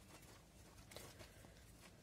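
Near silence with a few faint clicks of metal circular knitting needles as stitches are worked for a 2-by-2 cable cross.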